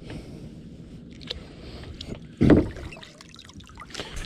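Steady low noise of water and wind around a plastic kayak as a magnet-fishing rope is hauled up by hand. A few faint knocks are heard, then one louder dull thump about two and a half seconds in.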